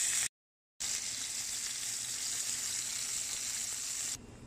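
Salmon fillets frying in olive oil in a pan, a steady sizzle. The sound drops out completely for about half a second shortly after the start, then the sizzle resumes.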